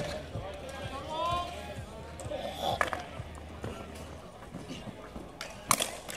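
Ball hockey play with players' voices calling, scattered stick and ball clacks, and a sharp loud crack of a shot near the end that the goalie saves.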